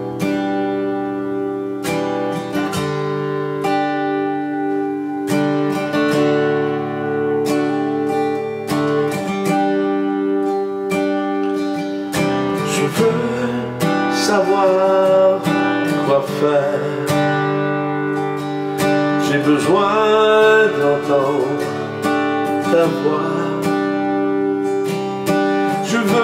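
Steel-string acoustic guitar, a sunburst Gibson, strummed in a steady rhythm of full chords as the song's instrumental introduction.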